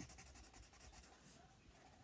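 Faint, rapid scratching strokes of a marker colouring hard on paper, fading out about one and a half seconds in.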